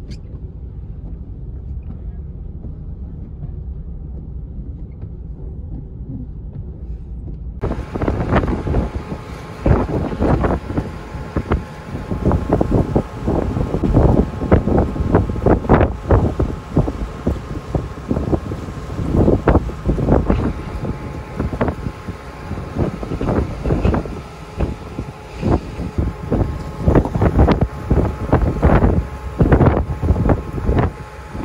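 A low, steady rumble heard from inside a vehicle on a ferry's car deck. A quarter of the way in it cuts suddenly to strong wind buffeting the microphone in heavy, irregular gusts over a ferry crossing rough water, with a faint steady engine drone underneath.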